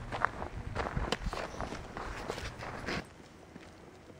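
Footsteps on sandy, gravelly dirt, irregular scuffs and crunches close to the microphone. They stop abruptly about three seconds in, and only a faint outdoor background remains.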